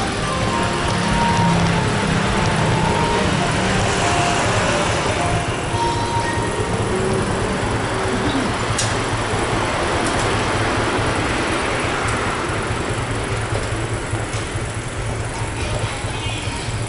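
Background music from loudspeakers, its melody notes heard in the first few seconds, over a steady low rumble of street noise.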